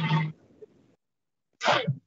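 A person at the microphone makes a single short, loud, noisy burst of breath near the end, like a sneeze. Before it, the end of a spoken word and a near-silent pause.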